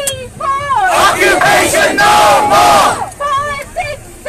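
Protest crowd chanting a slogan in call and response: a lead voice calls a short rhythmic phrase, the crowd shouts back together for about two seconds, and the lead voice starts the next call near the end.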